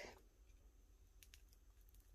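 Near silence: room tone with a low hum and a few faint clicks from hands handling a silicone coaster mould.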